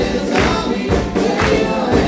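Rock band playing live, with acoustic guitars, piano, drums and singing. A steady drum beat lands about twice a second.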